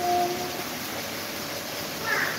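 Several electric fans running together, giving a steady rushing of air. A short, steady hum sounds at the very start.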